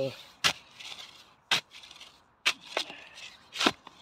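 About five sharp, irregularly spaced strikes of a hand digging tool driven into the earth of a bank.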